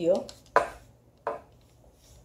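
Two sharp knocks, about three-quarters of a second apart and the first the louder, as the aluminium centre column of a Manfrotto 190XPRO3 tripod is pushed upward through its collar by hand.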